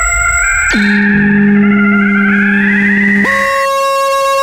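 Experimental electronic music: sustained synthesizer tones held over a noisy low rumble, with the pitches jumping abruptly about a second in and again near the end, and wavering higher tones in between.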